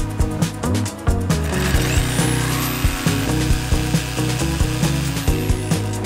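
Power saw cutting a vinyl flooring plank: the motor spins up about a second and a half in, cuts, and winds down near the end. Background music with a steady beat plays throughout.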